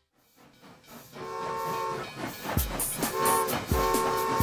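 Cartoon steam-train whistle tooting: one long toot about a second in, then shorter toots near the end.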